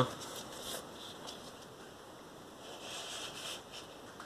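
Rain on a sheet-metal roof, a faint steady hiss, with the rustle of a cardboard LP sleeve being turned over and handled, a little louder about three seconds in.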